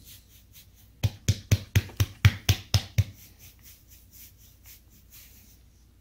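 A hand patting a dog's belly: nine quick pats, about four a second, starting about a second in, with lighter rubbing of the fur before and after.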